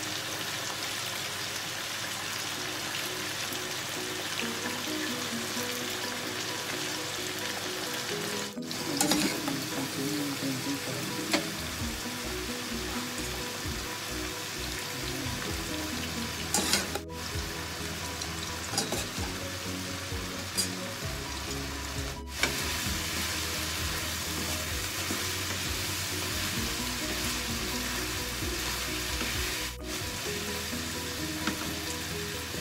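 Chicken, potato and carrot pieces frying steadily in a frying pan, stirred now and then with a wooden spatula that knocks against the pan. The sound breaks off briefly a few times.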